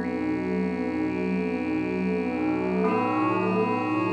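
Electronic synthesizer music from a Korg Kaossilator and a Teenage Engineering OP-1: a sustained droning chord with a slow pulse, moving to a new chord with a different bass note about three seconds in.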